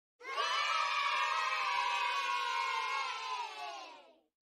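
A crowd of voices cheering and shouting together, fading out in the last second.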